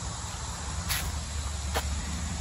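Steady outdoor insect chirring, like crickets, with two faint ticks, one about a second in and one near the end.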